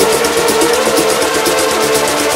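Melodic house/techno track playing from a DJ's decks: a fast, even hi-hat pattern over a sustained synth tone.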